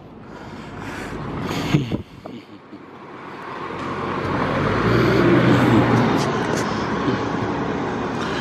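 City street traffic with a motor vehicle passing, its engine growing louder to a peak about five to six seconds in and then easing off.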